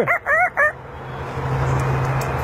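African grey parrot imitating a rooster's crow into a microphone. It gives three short pitched calls, then a long, rough, drawn-out note.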